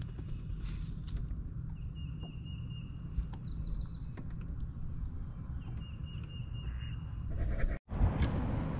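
A bird sings in the background over a steady low rumble, with a held high whistled note and a quick run of repeated higher notes. The sound cuts out briefly near the end.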